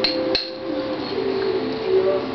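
Two quick, sharp clicks near the start, a spoon knocking against a glass bowl of plum jam while jam is scooped out. They sit over the held tones of background music.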